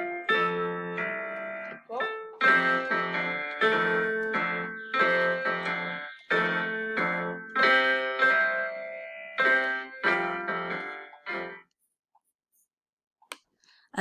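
Piano duet played four hands, teacher and student together: a lively, rhythmic tune of struck chords and melody notes with a teacher's part that sounds a little jazzy. It stops a couple of seconds before the end.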